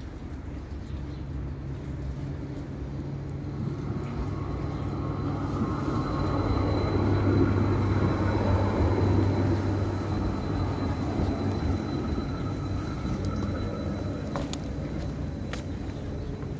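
Electric tram running past a stop, its motors giving a set of steady whining tones. The sound swells over several seconds and then fades, with a couple of sharp clicks near the end.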